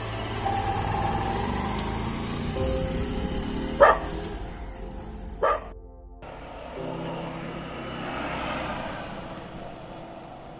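A Hero Hunk motorcycle engine running under background music, with two short dog barks about four and five and a half seconds in. The sound cuts out briefly just before six seconds, and the music carries on after.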